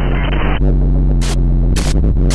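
Electronic noise music: a dense wash of static that cuts off sharply about half a second in, giving way to a loud, deep buzzing hum broken by two short bursts of hiss.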